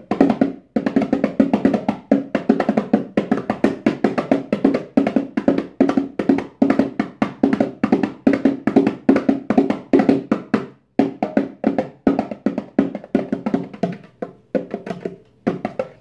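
Rock Jam bongos played by hand by a beginner: a rapid run of open hand strikes at about five a second, with short breaks about half a second and eleven seconds in.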